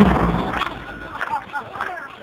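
A murga's large bass drum (bombo) struck once, loud, at the very start and ringing out, with a crowd's voices underneath.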